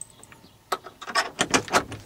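A quick run of sharp plastic clicks and knocks about a second in, as a plastic cabinet drawer is unlatched and pulled open.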